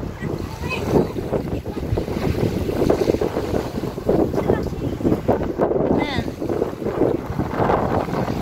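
Strong wind buffeting the microphone, a loud, fluttering rumble that rises and falls in gusts.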